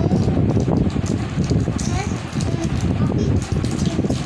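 Wrapper crinkling as chocolates are unwrapped, over a steady low background rumble, with a few brief bits of voice.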